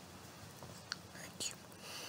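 Faint breathy mouth sounds from a man close to the microphone: soft hissing breaths and a couple of small lip clicks, with no clear words.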